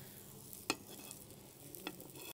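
Faint sizzle of a lachha paratha frying in oil in an iron pan, with two light clicks of a metal spatula against the pan, about a second apart.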